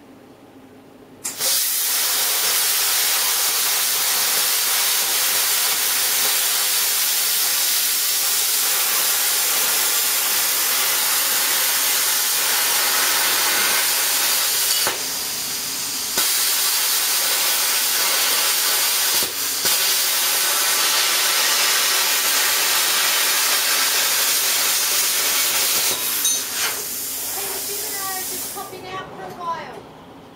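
Small domestic air plasma cutter with a PT31 torch cutting a circle through steel sheet: a loud, steady hiss of the arc and air jet that starts about a second in, dips briefly around the middle and stops near the end.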